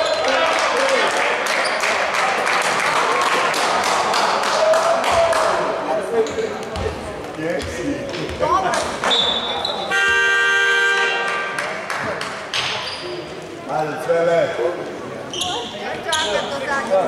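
Basketball game: players and spectators shouting with the ball bouncing on the court. About nine seconds in a referee's whistle blows, and a moment later the game horn sounds for about a second and a half.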